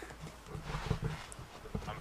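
Handling noise: irregular soft knocks and rubbing as the camera is moved about.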